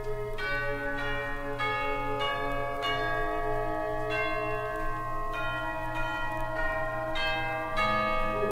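Bells struck one note at a time in a steady sequence, about one every 0.6 s, each note ringing on into the next, over a steady low hum; this is the opening of a 1967 live concert band arrangement played from vinyl.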